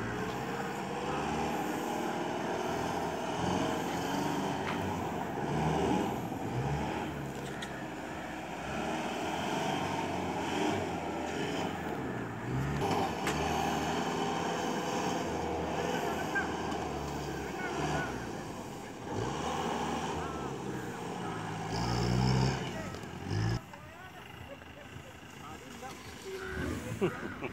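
Off-road racing jeep engine revving hard again and again, its pitch rising and falling as the jeep is driven through the dirt course. Near the end the engine noise drops away.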